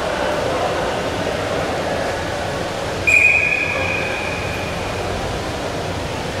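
Referee's whistle: one sharp blast about halfway through, starting suddenly and trailing off over a second or so, signalling the restart of the bout at the start of the second period. Steady arena crowd hubbub runs underneath.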